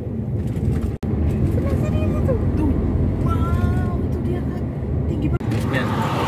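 Steady low road and engine rumble inside a moving car's cabin, with faint voices in the background. The sound drops out for an instant about a second in and again near the end.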